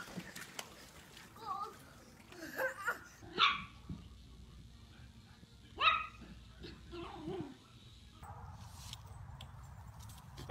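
A dog barking and yipping in short calls spaced a second or two apart, the loudest about three and a half and six seconds in.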